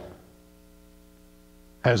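A faint, steady electrical hum made of several even tones, heard while the speech pauses; a man's voice starts again near the end.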